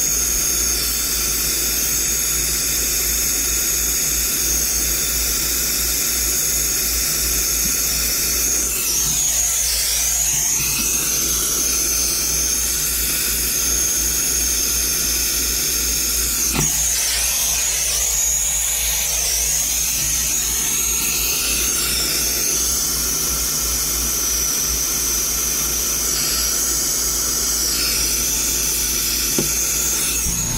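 Brazing torch flame hissing steadily as copper refrigerant tubing is brazed. The hiss changes colour twice, around ten and eighteen seconds in, as the torch moves.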